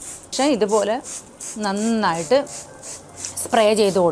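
Hand trigger spray bottle squirting onto plant leaves in quick, short hisses, a few per second, between stretches of a woman talking.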